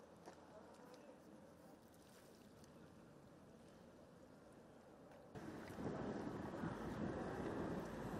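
Faint outdoor ambient noise with wind on the microphone. It turns suddenly louder and rougher about five seconds in.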